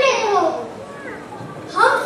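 A child's voice on stage in a large hall, trailing off in the first second, then a short pause before a child's voice starts again near the end.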